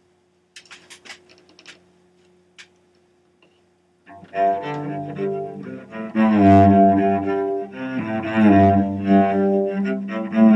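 Solo cello. A few soft knocks and a faint held tone come as the instrument is brought into position. About four seconds in, bowed playing begins: long, full-bodied notes, several sounding at once, moving from one to the next.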